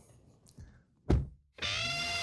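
A single heavy thump about a second in, then after a short silence a music sting with held chords starts up.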